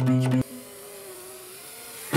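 Acoustic guitar strummed in quick strokes, cut off suddenly less than half a second in. After that only a faint single note lingers over hiss.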